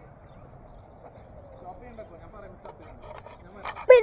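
Quiet outdoor background with faint distant voices and a few light ticks in the second half; a man's voice starts right at the end.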